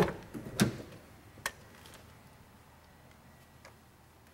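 Car rear door being unlatched and opened: a sharp latch click, then two lighter clicks and knocks within the first second and a half, followed by faint room tone.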